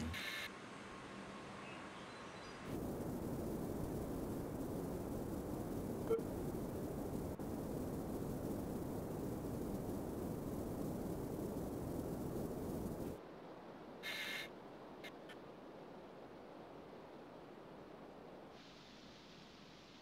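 Outdoor ambient noise: a steady low rushing sound rises about three seconds in and cuts off abruptly about ten seconds later. It gives way to a fainter hiss with one brief higher sound a second later.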